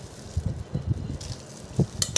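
Plastic bag of oily salted sardines being handled, giving soft, irregular low thumps and a faint rustle, with one sharper knock near the end.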